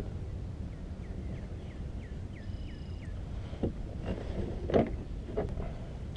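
Wind rumbling on the microphone, with a short run of faint, high, falling chirps in the first half. A few sharp clicks and knocks near the end come from handling the fish and gear.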